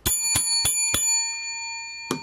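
A small metal bell struck four times in quick succession, about three strikes a second, its bright ringing tone fading slowly afterwards.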